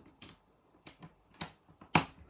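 Sharp plastic clicks, about six spaced irregularly across two seconds with the loudest near the end, from a fuse carrier being pushed into a fused spur on a heating-controls demo board to power up the system.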